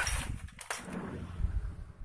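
Small metal engine parts, bolts and washers, being handled and moved about in a metal tray, with a few light clicks over a steady low background rumble.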